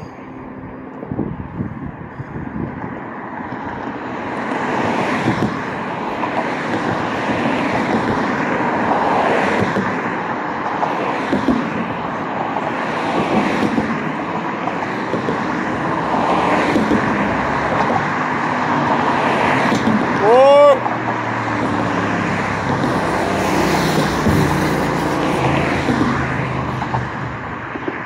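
Street traffic, cars passing one after another in a steady rise and fall of road noise. About twenty seconds in, a short rising, pitched squeal-like sound stands out as the loudest moment.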